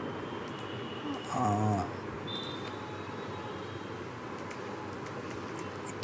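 A man's drawn-out hesitant "aah" about a second in, then steady microphone hiss, with a few faint computer keyboard clicks near the end as a word is typed into a search box.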